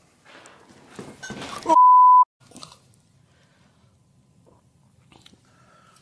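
A man falling: a scuffle and clatter build up about a second in, with a brief cry. Then a loud, steady half-second beep, a censor bleep, cuts over his word. After that there is only a faint room hum and a couple of small clicks.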